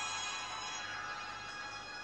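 Quiet background music with held, steady tones.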